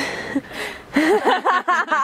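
A brief rush of noise, then people's voices and laughter starting about a second in.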